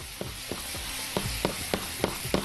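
Butter and oil sauce sizzling in a saucepan as it is stirred with a silicone spatula, with a few light ticks of the spatula against the pan.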